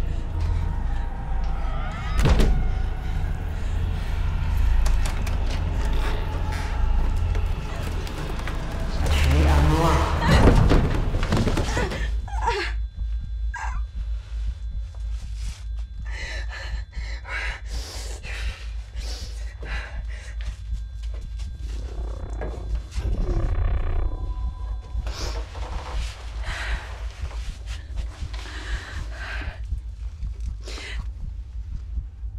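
Film soundtrack sound design: a heavy low rumble with a few thuds and voice-like sounds, changing about twelve seconds in to a fast low pulsing under faint thin high tones.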